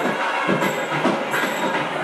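Dense, loud din of temple festival percussion, with a high metallic clash ringing out about every second.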